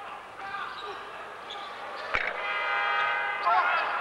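Arena shot-clock buzzer giving a steady buzz for just over a second, signalling a shot-clock violation, over crowd noise. A sharp thud comes just before it.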